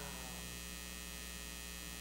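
Steady electrical mains hum on the microphone and recording feed, with a low buzz and a series of fixed higher tones.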